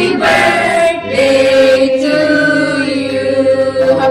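Several people singing together. About a second in they move onto one long held note.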